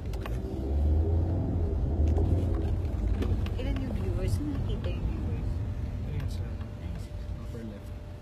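Low rumble of a moving car heard from inside the cabin, swelling about a second in and easing off later, with voices talking over it.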